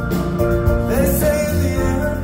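Live band music heard from the audience: a male voice singing over electric guitar and a steady low bass, with a sung note bending in pitch about a second in.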